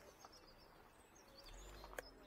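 Near silence with faint birdsong: a few short, high chirps near the start and again after the middle. A low rumble comes in near the end.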